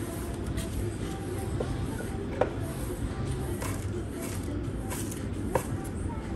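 A broom sweeping dust across a tile floor in repeated short strokes, with two light knocks, about two and a half seconds in and near the end, over a low steady background rumble.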